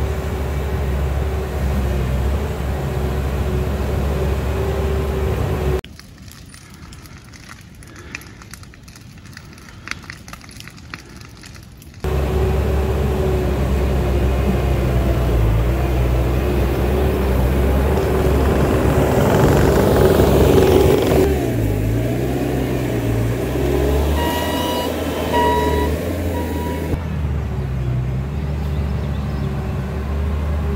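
Bobcat T650 compact track loader's diesel engine working under load as it pushes wet dirt with its bucket. The engine note climbs to a peak about two-thirds of the way through, then falls away. The sound drops much quieter for several seconds in the first half, and a few short beeps from its backup alarm come near the end.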